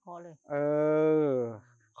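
A person's voice: a short word, then a long drawn-out hesitation sound "เออ" ("errr"), held steady for about a second and falling slightly in pitch at the end.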